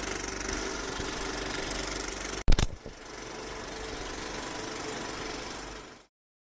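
Film projector clatter sound effect, a steady mechanical rattle that breaks off about two and a half seconds in with a single loud hit, followed by a quieter running noise that fades out at the end.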